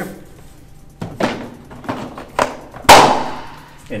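Hollow plastic knocks and clunks from an upright floor scrubber's water-tank assembly being handled and set back onto the machine. A few light knocks come first, then one loud clunk with a short ringing tail about three seconds in.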